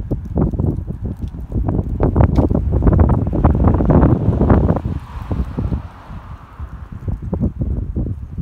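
Wind buffeting a phone microphone outdoors: a loud, gusty low rumble that eases after about five seconds.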